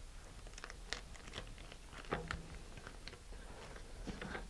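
Faint crinkling and small ticks of a thin plastic bag under fingertips as it is pressed and rubbed over paper on a plastic nose cone, with one small knock about two seconds in.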